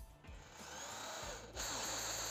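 Electric drill with a countersink bit boring a pilot hole into melamine-faced particleboard. The drill runs steadily and gets louder about a second and a half in, with a high whine, as the bit cuts into the board.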